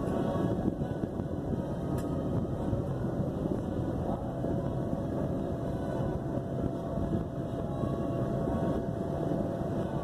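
Electric inflation blower running steadily with a constant hum, filling an inflatable outdoor movie screen.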